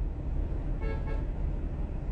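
Steady low rumble of a car heard from inside the cabin, with a brief faint pitched tone about a second in.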